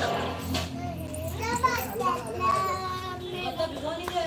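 Indistinct, fairly high-pitched voices, children talking and playing, with no clear words.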